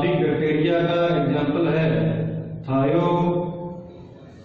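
A man's voice in two long, drawn-out phrases with held, chant-like pitches. The first breaks off a little past halfway and the second fades out shortly before the end.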